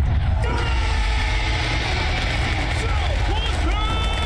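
Animated battle sound effects: a dense, steady low rumble with gunfire and short shouted cries above it.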